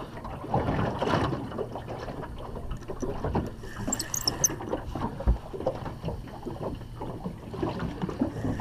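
Choppy water slapping against the hull of a small aluminium boat, with irregular knocks and rattles from handling gear in the boat and one heavier low thump about five seconds in.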